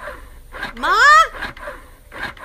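Double electric breast pump pulsing softly about twice a second as it cycles, under a woman's loud, rising call of "Ma?" about a second in.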